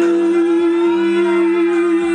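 A woman singing one long, steady held note over a karaoke backing track.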